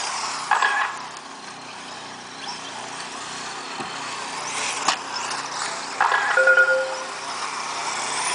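Electric 1/10-scale 4WD RC cars racing on a dirt track: a thin motor whine over a steady noisy background, with a sharp click near the middle.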